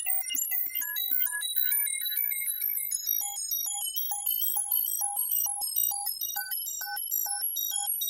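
Propellerhead Reason Thor synthesizer playing an FM bell patch: a fast, even stream of short, bright bell-like notes at changing pitches, arpeggiated by a Matrix pattern sequencer.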